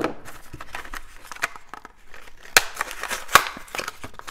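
A plastic blister pack of markers being opened by hand: plastic crinkling and crackling, with two sharp snaps in the second half as the pack gives way.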